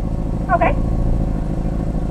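Car engine idling steadily, heard from inside the cabin, with a brief spoken "okay" about half a second in.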